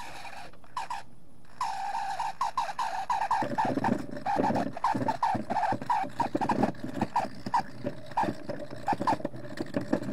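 A wet rock being scrubbed by hand with a polishing tool in quick back-and-forth strokes. Each stroke gives a short rising squeak, about two to three a second, beginning about a second and a half in, with a rougher scraping under it from about halfway through.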